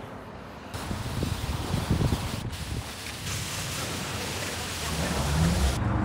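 Steady rushing hiss of pressure-wand water spray at a self-service car wash, broken by a few abrupt cuts.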